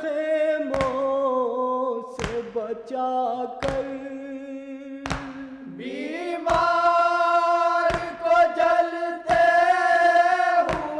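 Male vocal singing of an Urdu Muharram noha in long held notes, rising in pitch about six seconds in. A sharp beat falls about every second and a half.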